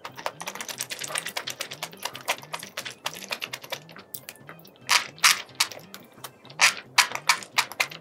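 Close-miked eating sounds: rapid, wet chewing clicks and lip smacks on spicy sauced seafood and enoki mushrooms, with louder noisy bursts of mouth sound about five and seven seconds in as more food goes in.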